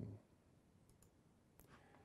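Near silence with a couple of faint, short computer mouse clicks about a second apart.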